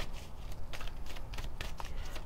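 A deck of oracle cards being shuffled by hand: a soft, uneven run of light clicks and rustles.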